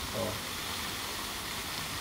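Steady hiss of water from a pond fountain spraying.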